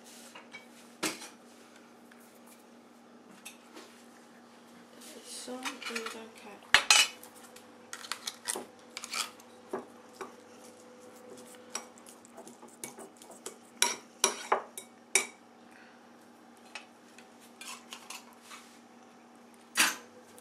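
China saucer clinking and knocking on a wooden table as a cat licks it and nudges it about, in scattered clicks. The loudest cluster comes about seven seconds in, with another around fourteen to fifteen seconds.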